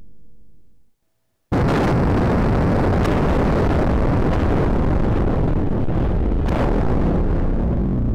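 A World Trade Center tower collapsing, heard as a loud, steady roar on archival footage. It cuts in suddenly about a second and a half in and holds.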